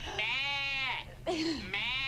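A puppet's man's voice imitating a sheep: two long, wavering bleats, the second starting near the end, with a short laugh between them.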